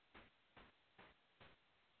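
Near silence, with four very faint ticks about half a second apart.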